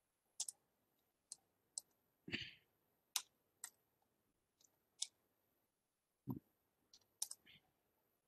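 Computer keyboard keys and mouse buttons clicking about a dozen times at an uneven pace as code is edited in a text editor. Two of the presses, about two and six seconds in, are duller and heavier.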